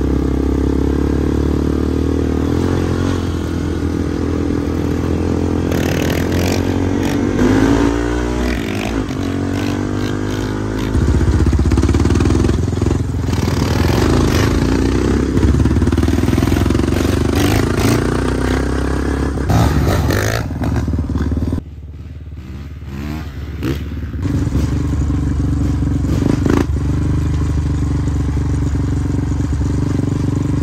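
Honda CRF450R dirt bike's single-cylinder four-stroke engine running close by, its pitch rising and falling with the throttle as it is ridden. The sound drops away briefly about two-thirds of the way through, then comes back.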